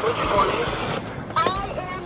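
Steel tire cable chains being handled and laid out on snowy ground, giving an even rustling handling noise for about a second. A brief faint voice comes in about one and a half seconds in.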